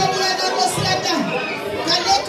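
A congregation praying aloud all at once: many voices overlapping in a large hall.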